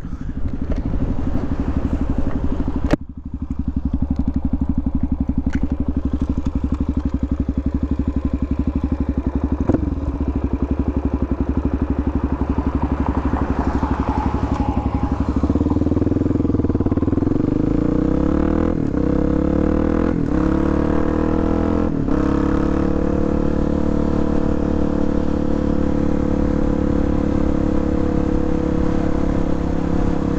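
Suzuki DRZ400SM's single-cylinder four-stroke engine, heard from on the bike. It runs steadily at low revs for the first half, with a brief drop near the start. About halfway in it accelerates with rising pitch through three quick upshifts a second or two apart, then settles into a steady cruise.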